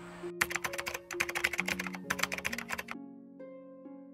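A fast run of sharp clicks like typing, over soft plucked-string music. The clicks stop about three seconds in, and the plucked notes ring on and fade.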